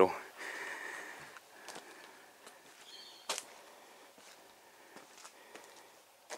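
Quiet outdoor ambience with scattered faint clicks and one sharper tap a little past halfway.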